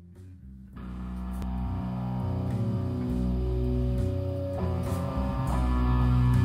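Guitar-led rock instrumental intro: after a quiet opening the band comes in about a second in, the music building steadily in loudness.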